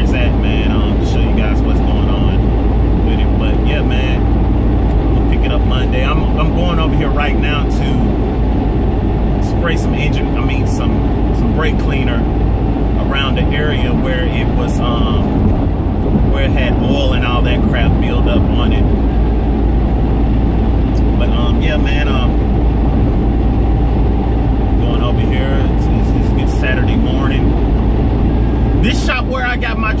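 Steady road and engine noise inside a car cabin at highway speed, with a man's voice talking over it.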